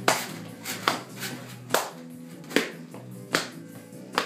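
Five sharp taps, a little under a second apart, from a baby bouncing in a doorway jumper, landing on the floor with each bounce. Music plays steadily underneath.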